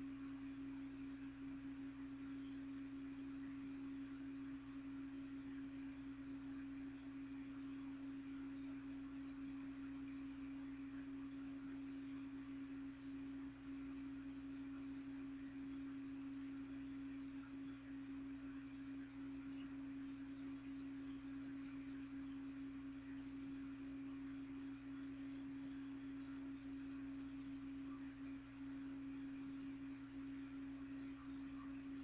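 Faint, steady hum holding one unchanging pitch, with a weaker, lower hum beneath it and no change throughout.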